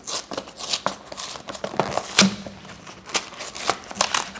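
Cardboard frozen-meal box being torn open by hand: a run of short crackling, ripping sounds, with one sharper knock about two seconds in.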